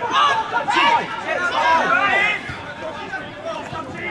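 Several voices shouting and calling over one another at a football match, with some crowd chatter, easing off somewhat in the second half.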